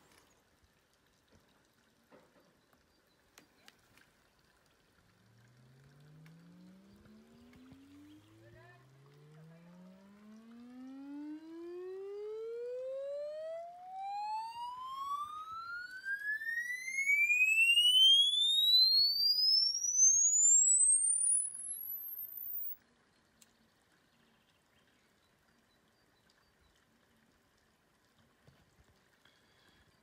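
Smartphone loudspeaker on its own playing a logarithmic sine sweep for a sound-level measurement: one tone glides steadily up from low bass to a very high whistle over about fifteen seconds, with fainter overtones running alongside. It is weak at the bottom and loudest in the upper range, as the bare phone speaker gives little bass, and it cuts off suddenly about three-quarters of the way through.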